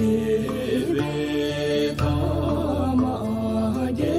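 A sung devotional chant: a single voice carries a wavering, ornamented melody over a musical backing with a low held drone, and the backing shifts about two seconds in.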